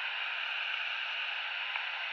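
Steady static hiss from a Quansheng UV-K5 handheld radio's speaker, receiving in USB single-sideband mode through its Si4732 HF receiver mod. It is bare band noise with no signal, because the radio has no proper antenna for these low frequencies.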